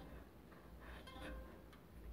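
Near silence, with a faint short tone from a steel string on a wooden frame about a second in, as a wooden bridge is slid beneath it.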